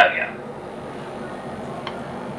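A man's voice finishes a word in Hindi, then a pause filled only by a steady low hiss of room tone, with one faint tick near the end.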